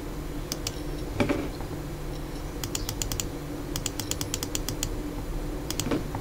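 Computer keyboard typing: several short runs of quick key clicks, over a faint steady low hum.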